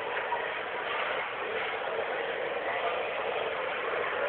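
Steady, even background noise of a busy indoor space around a running escalator, heard through a low-quality, band-limited recording.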